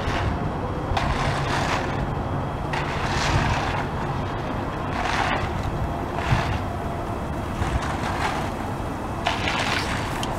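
Bull float swishing across wet concrete in repeated push-and-pull strokes, over a steady engine hum from machinery running nearby.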